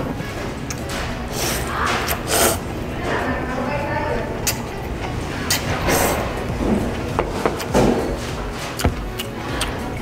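Eating noodles with chopsticks: stirring in the bowl, then several short slurps and chewing noises, over background music.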